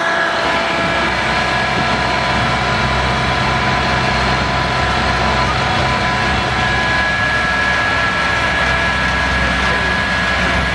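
A compact 4WD tractor's engine running steadily as it pulls a passenger trailer. It makes an even drone with several steady whining tones over it.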